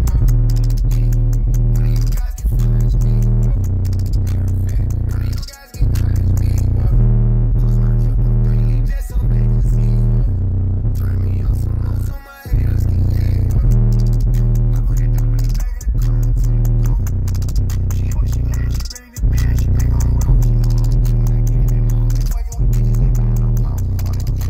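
Bass-heavy music played loud through two DB Drive WDX G5 10-inch subwoofers powered by a Rockford Fosgate 1500BDCP amplifier, heard inside the truck cab. Deep bass notes repeat in a steady pattern, with a short drop in the music about every three and a half seconds.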